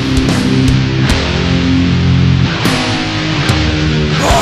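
Death metal music: distorted electric guitars play long held chords that change a couple of times, with a few scattered drum and cymbal hits and no vocal line.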